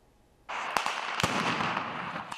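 Gunfire crackling at a military training exercise: after a brief near-silence, a steady crackling noise starts about half a second in, with two sharp shots about half a second apart.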